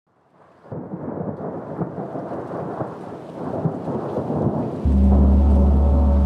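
Rumbling rain and thunder ambience fades in quickly from silence as the opening of a new-age music track. About five seconds in, a loud, deep, steady drone joins it.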